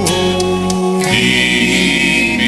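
Gospel music backing track in the song's closing bars: a sustained chord with choir-like voices held, moving to a new held chord about a second in.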